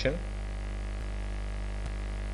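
Steady electrical mains hum with a stack of even overtones, picked up by the recording microphone.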